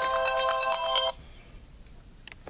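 Electronic melody of several held tones, re-struck in quick notes, that stops suddenly about a second in.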